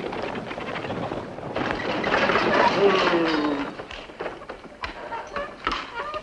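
Horse-drawn covered wagon arriving and pulling up: a dense rattle of hooves and wheels that swells about a second and a half in, with a falling cry over it near three seconds, then scattered separate clops and knocks near the end as it comes to a stop.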